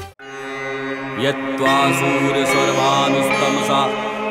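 A mantra chanted by a voice over a steady drone, as devotional background music. The earlier music cuts off abruptly at the start and the chanting comes in about a second later.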